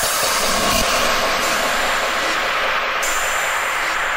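Part of an experimental electronic track: a dense, hissing noise wash, rumbling and train-like, with a low steady drone under it from about a second in.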